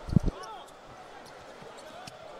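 Futsal ball thudding off players' feet and the wooden court: a couple of low thumps right at the start, then faint hall ambience.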